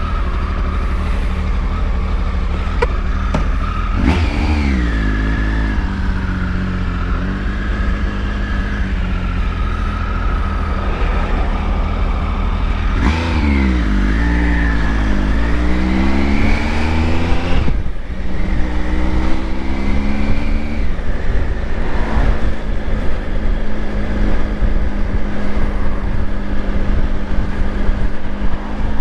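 Motorcycle engine pulling away and accelerating through the gears. The revs climb about four seconds in and again in the middle, drop sharply at a gear change, then settle to steady running at town speed, with a low rumble of wind and road noise underneath.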